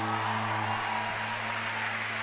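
Electric guitar's final chord ringing out through the amplifier after the band's last hit, its upper notes slowly fading while a steady low tone hangs on, over a faint hiss of cymbal wash.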